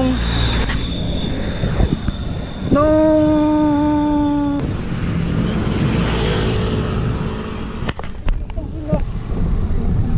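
Wind rushing over the camera microphone and road noise from a road bike being ridden. About three seconds in, a steady pitched tone is held for nearly two seconds.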